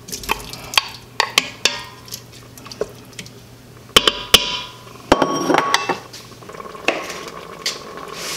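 A wooden spoon scrapes and taps sliced sausage out of a bowl into an Instant Pot's stainless steel inner pot. Two sharp knocks come about four seconds in as the bowl is set down on the counter. The spoon then clatters and stirs in the metal pot with a brief metallic ring.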